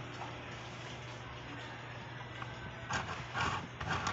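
Steady background noise with a low hum, and a few light knocks and rustles near the end as hands handle a small plastic portable sewing machine.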